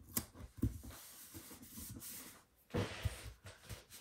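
Paper rustling and soft handling knocks as hands work a sticker onto a spiral-bound planner page and smooth the pages flat, with a louder knock about half a second in and another cluster near three seconds.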